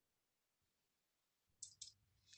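Near silence, with two faint short clicks about one and a half seconds in.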